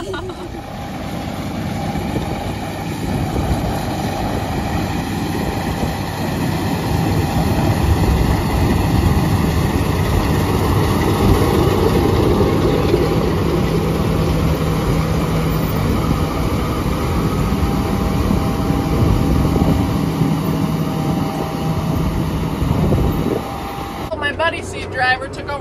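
John Deere S770 combine harvester running while cutting wheat with its MacDon FlexDraper header: a loud, steady mechanical drone with a hum, building over the first several seconds and then holding.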